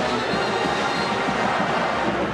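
Steady stadium crowd noise in a televised football broadcast, with music mixed in.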